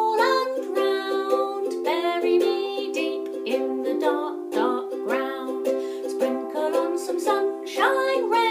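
Ukulele strummed in a steady rhythm, about two strokes a second, with a woman singing along.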